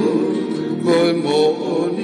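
A song: a singer holding and bending notes over guitar accompaniment.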